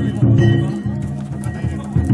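Danjiri float festival music: drum strokes and clanging metal hand gongs played on the moving float, with the gongs' ringing tones held between strikes, and voices mixed in.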